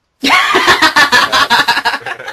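A loud burst of laughter breaking out just after the start, in rapid pulses, much louder than the talk around it.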